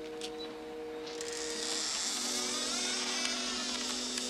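A steady high whirring, like a small electric motor, comes in about a second in, over held low notes of the film score.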